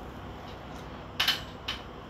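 Metal spoon scraping and clinking against a small steel tempering pan while stirring, two short strokes, the first about a second in and the second near the end. Under them, a faint steady sizzle of cashews, red chillies and curry leaves frying in ghee.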